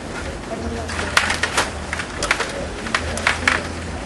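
Sharp plastic clacks of rod table hockey play on a Stiga table: the rod-driven players striking the puck and each other and the rods knocking in their slots, a quick irregular run of about eight clacks from about a second in.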